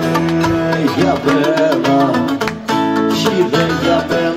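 Live Greek folk music: a man sings over strummed acoustic guitar and plucked lute accompaniment.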